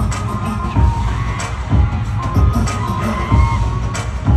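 Loud pop track played over a concert arena's sound system, with a heavy, steady bass beat and a melodic line above it.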